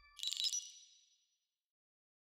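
A bright, high-pitched ding from a studio logo sting, sounding just after the start and ringing out within about a second. The fading tail of a deeper logo hit lies under its start.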